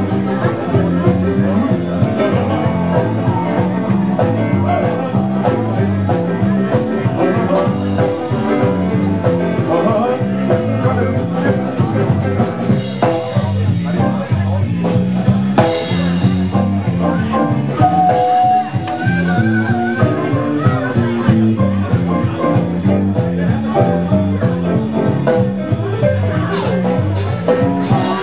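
A live band playing a loud blues-rock jam, with electric guitar, drums and a repeating bass line, and a voice singing over it.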